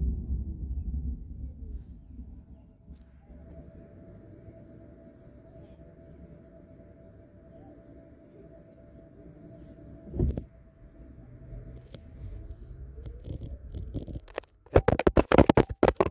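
Quiet car cabin with low road rumble and a faint steady hum, one short thump about ten seconds in, then a quick run of loud knocks and rattles near the end as the handheld phone is fumbled and falls.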